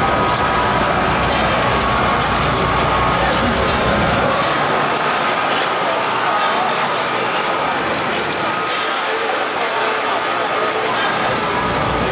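Large crowd talking and calling out, over a dense, continuous crackle of firecracker strings going off.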